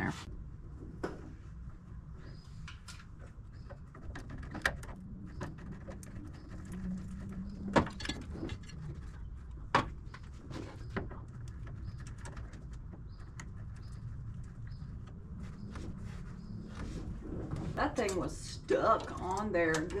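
Scattered sharp metallic clicks and knocks of a hand tool working the clamp loose on a car's lower radiator hose, over a low steady hum; a voice mutters near the end.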